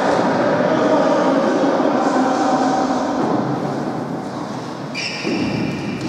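Echoing din of a futsal match in a large sports hall: players' calls, feet and ball on the court blurred together by the hall's reverberation. A brief high-pitched sound comes about five seconds in.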